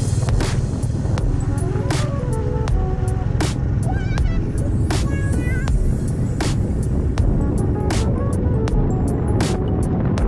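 Background music with a regular drum beat and a stepping melody, over the steady low rumble of a motorcycle riding along.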